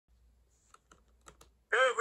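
A few faint, short clicks, then about 1.7 s in a recorded voice starts playing from a children's sound book.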